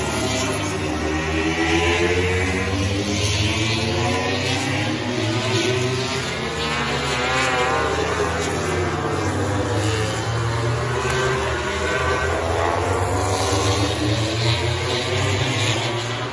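MotoGP prototype racing motorcycles' four-cylinder engines at speed on the track, their notes rising and falling as the bikes pass. Several engines overlap, most thickly in the middle.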